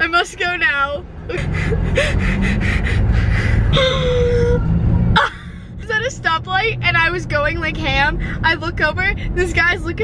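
A young woman laughing, with high-pitched giggles and squeals. Earlier, about four seconds of loud, bass-heavy sound with a steady pulse cuts off suddenly.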